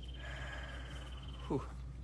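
A high, rapidly pulsing trill from a small animal runs until about a second and a half in, when a man breathes out with a 'whew'.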